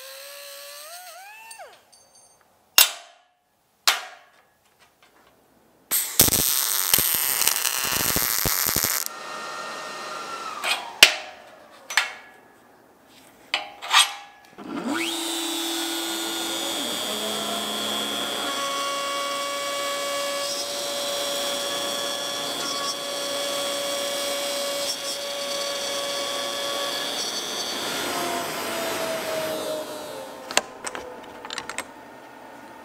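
Workshop tool sounds in sequence. An angle grinder cuts a steel bar, its pitch sagging under load. A few sharp knocks and a loud noisy burst follow. Then, about halfway through, a power tool spins up and runs steadily for over ten seconds while boring into a plywood board.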